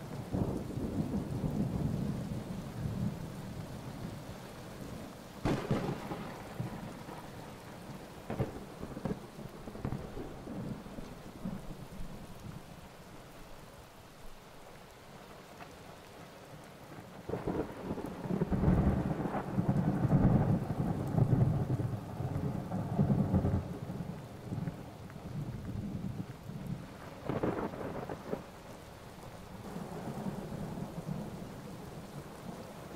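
Rain with rolling thunder: deep rumbles that swell and fade, with a sharper crack about five seconds in and another near the end, and the heaviest rumbling about two-thirds of the way through.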